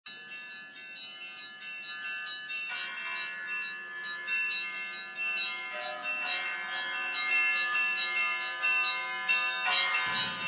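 Bells ringing: a run of irregular strikes whose long ringing tones overlap, growing gradually louder.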